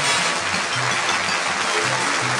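Studio audience applauding over the show's closing theme music, with low bass notes repeating beneath the clapping.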